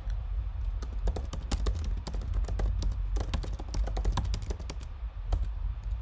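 Typing on a computer keyboard: quick, irregular runs of key clicks that thin out near the end, over a steady low hum.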